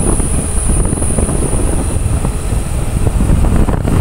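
Wind buffeting the microphone of a moving motorcycle, over the low, steady sound of the bike running along the road.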